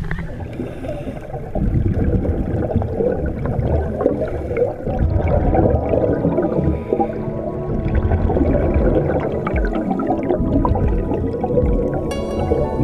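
Water at the sea surface, then dense underwater bubbling and gurgling from scuba divers' exhaled air rising around the camera during a descent.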